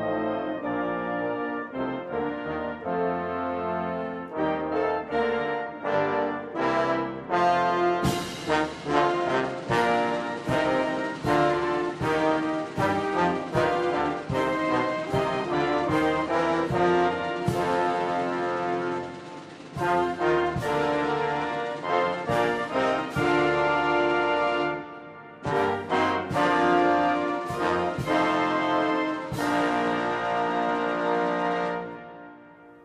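Military brass band playing a slow, stately piece, typical of the national anthem during a colors ceremony. Sharp percussion strikes join from about eight seconds in, and the music dips briefly twice near the end before swelling again.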